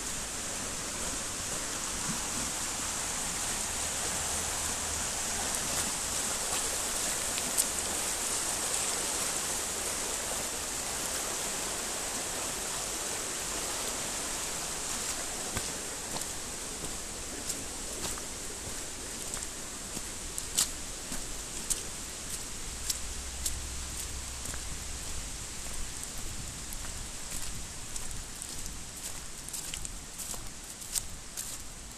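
Steady rushing of a swollen, muddy stream, a constant hiss that eases somewhat in the second half. From about two-thirds of the way in, scattered sharp clicks and snaps stand out above it.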